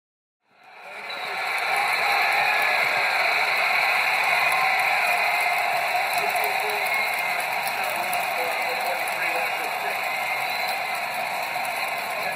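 Outdoor ambience fading in about half a second in: a steady high-pitched hum with voices murmuring underneath.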